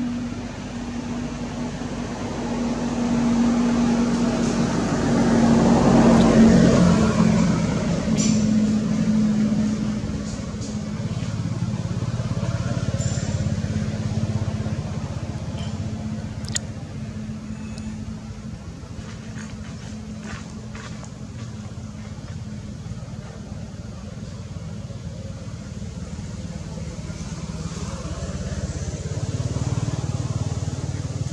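A motor engine running with a steady low hum, swelling louder for a few seconds about five seconds in and then easing off, with a few faint clicks.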